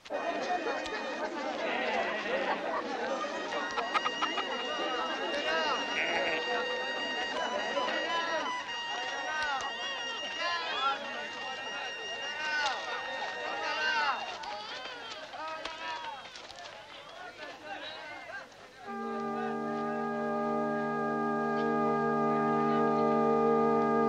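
Crowd chatter: many overlapping voices of a busy street, with a few high held notes over them. About three quarters of the way through the chatter fades and a loud, steady chord of film music takes over.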